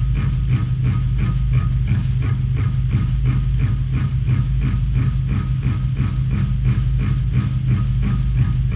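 Sludge metal band playing live: heavily distorted guitars and bass hold a low, sustained drone, pulsing at about four beats a second.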